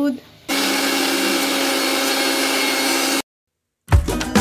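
A kitchen appliance's electric motor running steadily: a hum under a loud, even whir that starts and stops abruptly.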